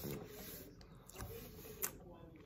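Mouth sounds of someone chewing a soft, chocolate-iced yellow snack cake, with a sharp click near the end.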